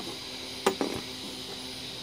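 Two light clicks in quick succession about two-thirds of a second in, from a stripped microwave magnetron being handled.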